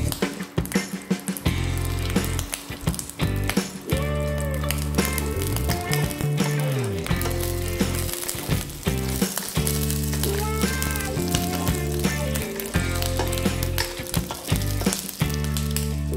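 Background music with a steady bass line, over whole spice seeds sizzling in hot oil in a wok. A metal spoon stirs the seeds around the pan.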